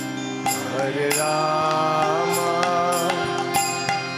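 Live kirtan: a male voice sings a devotional chant over a sustained harmonium drone and strummed acoustic guitar, with a wavering held note from about a second in. Regular hand-drum strokes keep the beat.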